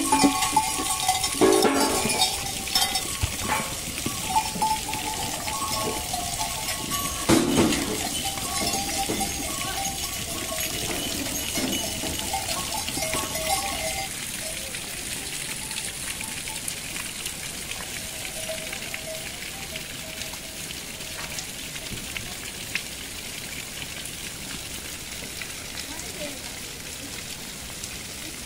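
A herd of goats jostling through a stable doorway, bells clanking with a few bleats, busiest in the first half and thinning out after that, over a steady hiss of rain.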